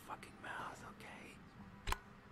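Low, whispered speech from a TV cartoon's soundtrack, with one sharp click just before the end.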